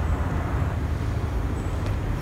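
Steady low background rumble with a faint hiss and no speech.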